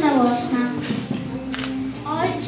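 A child's voice speaking through a handheld microphone and loudspeaker, ending in a long drawn-out syllable. A single sharp click sounds about one and a half seconds in.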